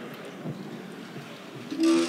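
Low room noise of a large hall with no distinct sound. Near the end a man starts singing the national anthem unaccompanied.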